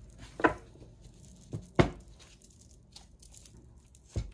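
Tarot cards being handled and laid down on a table: two sharp taps, about half a second and just under two seconds in, with soft card rustling between.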